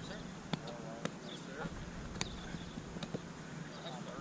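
Roundnet (Spikeball) rally: a few sharp slaps of the small rubber ball off players' hands and the trampoline net, the loudest about two seconds in, over faint voices.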